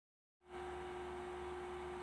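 Silence for about half a second, then a faint steady electrical hum with one constant tone: background room tone.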